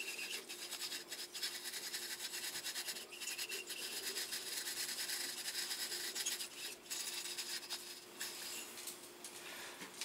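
Lizard Red Gun baitcasting reel being cranked steadily by hand, its gears giving a fast run of fine clicks while braided line rubs onto the spool under tension.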